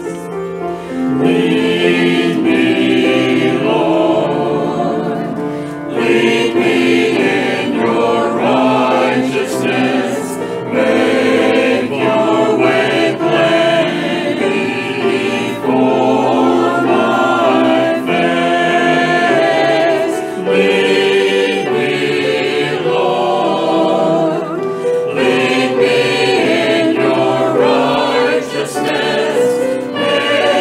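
Mixed church choir of men and women singing together, in phrases with short breaks between them.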